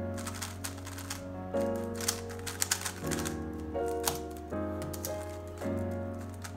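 Rapid, irregular clicking and clacking of a DaYan TengYun V2 3x3 speedcube being turned quickly during a solve, over background music with sustained chords.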